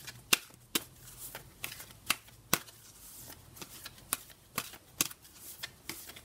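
A deck of large oracle cards shuffled by hand: a run of short, sharp card snaps, roughly two a second and unevenly spaced, with soft sliding of cards between them.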